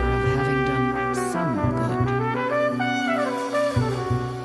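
Jazz ensemble recording led by brass, with a trumpet melody that slides between notes over a steady bass line.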